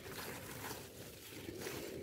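Faint rustling of radish leaves as a hand moves through the foliage.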